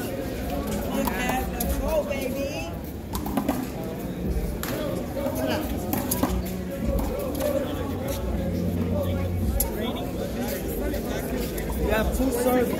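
One-wall handball rally: the rubber ball hit by hand and striking the wall in sharp, irregularly spaced cracks, over background voices.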